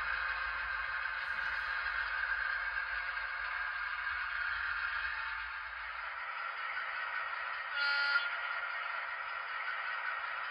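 Sound decoder in an HO scale Broadway Limited EMD SW1500 switcher, playing its diesel engine sound through the model's small onboard speaker. A short horn toot sounds about eight seconds in.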